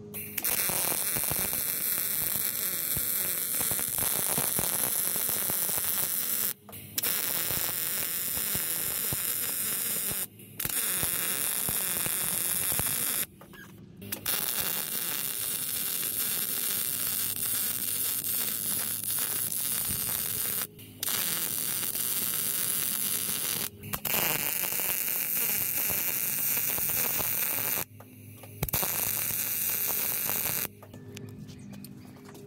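MIG welder arc crackling steadily as beads are laid uphill on a steel truck frame splice, using .030 wire and 75/25 gas with the wire speed turned down for the vertical-up welds. The arc runs in about seven stretches of a few seconds, each broken by a brief stop under a second long.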